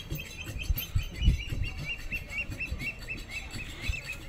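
A bird calling a rapid, even string of short chirps, about three or four a second, over low rumbles and thumps on the microphone.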